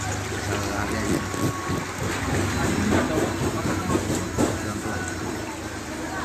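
Vehicle engine running at low speed with a steady low hum as it wades slowly through floodwater, with water sloshing around it.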